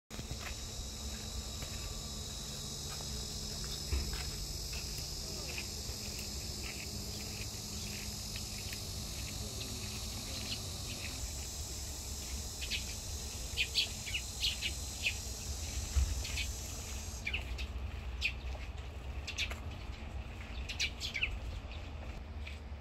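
Insects keep up a steady high-pitched drone that stops abruptly about 17 seconds in. Birds chirp throughout, more often in the second half.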